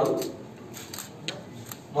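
A pause in a man's speech with a handful of light, sharp clicks scattered through it, the sharpest about a second and a quarter in.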